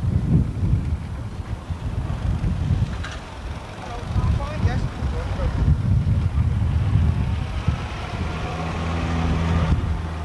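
Morris Minor Traveller's four-cylinder engine running slowly as the car drives past close by, its steady low note strongest in the last two seconds, with wind rumbling on the microphone and voices in the background.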